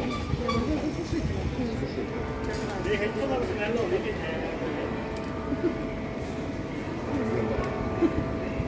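Indistinct chatter of several people talking, over a steady low rumble with a faint hum that comes in a couple of seconds in.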